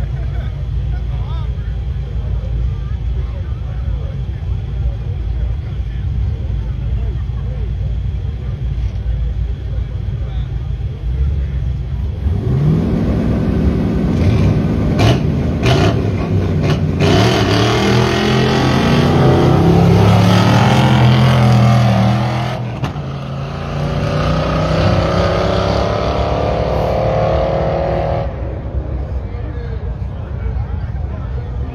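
Small-tire drag cars at the starting line: a steady low engine rumble, then from about twelve seconds in the engines are revved hard with rising pitch. After a brief dip, a rising pull that stops near the end, as the cars run off down the track.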